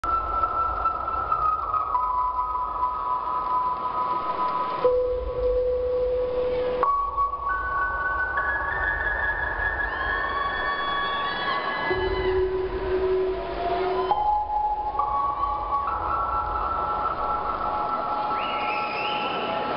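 Held electronic keyboard notes, several at once, changing pitch every second or two with a few short gliding tones about ten seconds in. They play over a steady noisy background with a low rumble, as arena intro music in a dark hall before the song.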